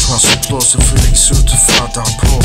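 Hip hop track: a rapped vocal over a bass-heavy beat with regular drum and hi-hat hits.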